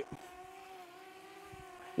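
Potensic Atom mini quadcopter drone flying, its motors and propellers giving a faint, steady hum.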